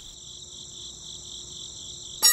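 Crickets chirping steadily, a night-time cricket ambience with a faint steady hum under it.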